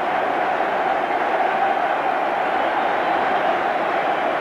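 Large stadium crowd cheering steadily, a continuous even wall of noise with no break.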